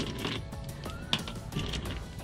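Loose screws and small metal hardware clinking in irregular light clicks as a hand sorts through a pile of them, over background music.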